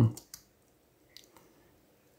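A few isolated computer keyboard keystrokes: two quick clicks just after the start and two more about a second in, quiet in between.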